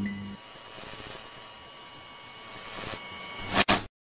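A steady hiss with faint steady tones in it, swelling slightly toward the end. It ends in two short loud bursts and then cuts off abruptly.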